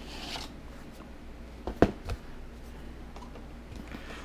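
Cardboard product packaging being handled and opened: a short sliding rustle at the start as the inner box slides out of its sleeve, then a sharp knock about halfway, the loudest sound, with a smaller knock just after.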